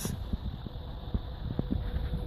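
Low, uneven background rumble with a few faint clicks.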